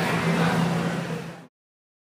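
A steady low mechanical hum over a wash of background noise. It fades away after about a second and then cuts to silence.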